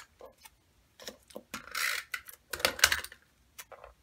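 Handling of small card-stock pieces and a tape-runner adhesive: scattered light clicks, with two short scratchy rasps about two and three seconds in as adhesive is run onto the back of a small punched label.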